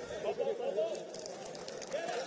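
Open-air football stadium ambience with faint, distant voices shouting and calling in the first second, then a steady background hush.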